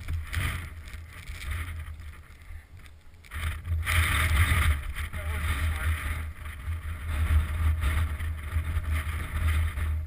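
Polaris snowmobile engine running, with wind buffeting the microphone. The level rises and falls, with a swell starting about three and a half seconds in.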